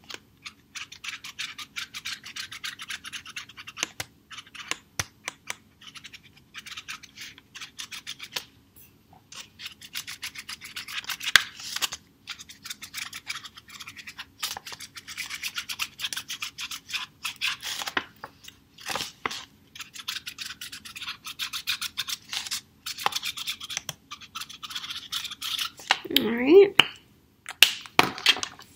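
Felt-tip art marker scratching over the ridged rim of a paper plate in rapid short back-and-forth strokes: a dry, rasping scribble that stops briefly now and then.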